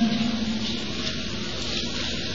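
A pause in a man's lecture: steady hiss of the recording with a faint low hum, after his voice trails off at the start.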